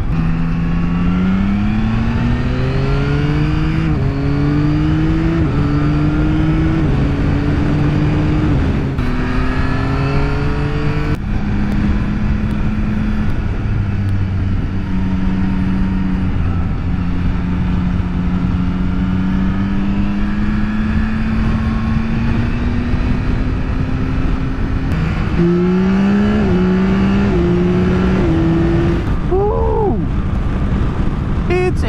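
Yamaha motorcycle engine accelerating up through the gears: its pitch rises and drops back at each of three shifts in the first eleven seconds, then holds steady at cruising speed. Near the end the pitch climbs and steps down again in quick short shifts. A steady rush of wind and road noise runs underneath.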